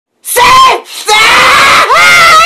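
A man screaming in pain as tape is ripped from his hairy leg. A short loud scream, then a longer one, with a third starting near the end.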